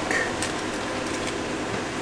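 Steady background hiss of room noise, with a few faint light clicks.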